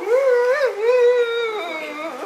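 A single drawn-out, wavering wail from a person's voice, held for nearly two seconds and dropping in pitch near the end.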